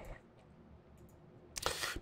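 Faint room tone, then near the end a brief breathy rush: a man drawing a quick breath just before he speaks.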